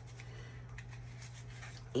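Faint rustling of paper dollar bills and a plastic pouch being handled, over a steady low hum.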